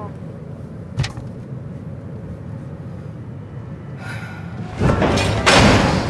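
Low, steady car-cabin rumble with a single sharp click about a second in. Near the end a much louder rush of noise begins.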